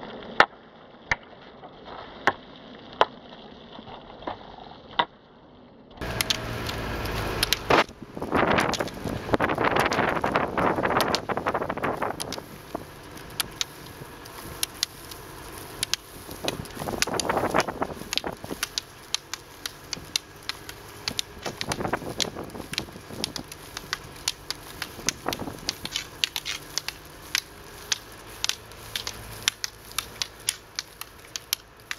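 Ski pole tips clicking on asphalt as two roller skiers pole along, with the rolling of roller ski wheels on the road underneath. The clicks come about once a second at first, then faster and overlapping, and a louder rushing noise comes up from about 7 to 12 seconds in.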